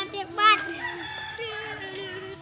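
Chickens clucking: a couple of short, sharp calls, the loudest about half a second in, over a steady hum.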